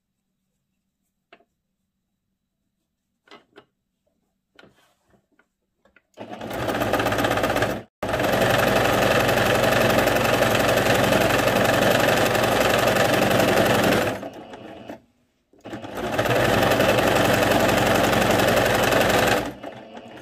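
Electric domestic sewing machine stitching through layered fabric in three runs, starting about six seconds in. It pauses briefly near eight seconds and again for about a second and a half near fourteen seconds, then stops just before the end. Before it starts, a few faint clicks.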